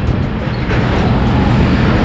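Steady road traffic noise heard from a moving vehicle, with trucks running close by: an even rush of tyre and wind noise over a low engine hum.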